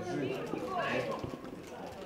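Youth footballers shouting across the pitch during open play, their calls loudest about a second in. A few short knocks come through among the voices.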